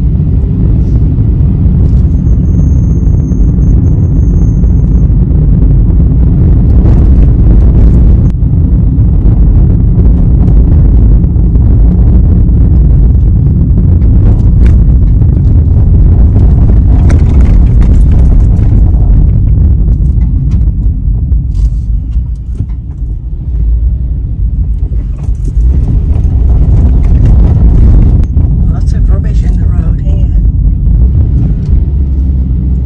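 Car interior road and engine noise while driving: a loud, steady low rumble that eases briefly about three-quarters of the way through.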